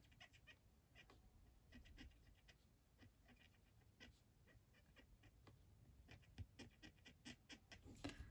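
Near silence, with faint light ticks of a brush-tip marker being dabbed onto a clear photopolymer stamp, coming more often near the end.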